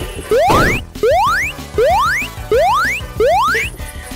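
A retro video-game sound effect, a rising 'boing' sweep, repeated five times at an even pace of about one every 0.7 seconds. The first sweep comes with a short whoosh, and game music plays softly underneath.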